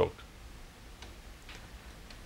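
A pause in conversation: quiet studio room tone with a faint steady low hum and a few faint clicks, the last word of a man's speech ending right at the start.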